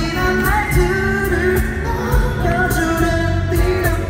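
Live pop-rock band performing a song, with a male lead vocalist singing into a microphone over drums, cymbals and acoustic guitar that keep a steady beat.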